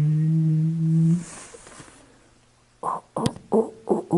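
A man's voice holding one long, steady hum or drawn-out vowel for about a second, then a few short spoken syllables near the end.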